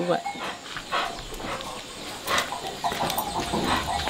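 A few short animal calls, dog-like, heard over the open-air background.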